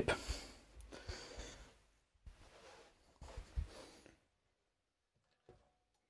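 Faint handling noise as a star-shaped electric guitar is lowered into a folding multi-guitar stand: soft rustling, then a small knock about three and a half seconds in, followed by near silence.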